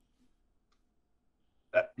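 Near silence, then a man's voice says one short word near the end.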